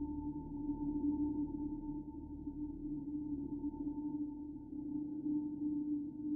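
Ambient background music: a steady low drone held on two unchanging tones, with a low rumble beneath that thins out in the second half.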